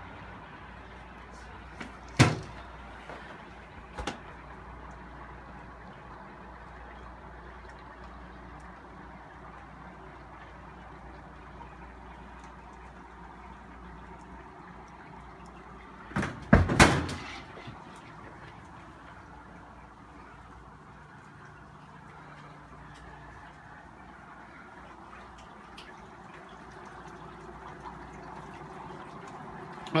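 Dry ice pellets sublimating in a pot of hot water, a steady rushing noise. A sharp knock comes about two seconds in, a smaller one at four seconds, and a cluster of loud knocks around the middle.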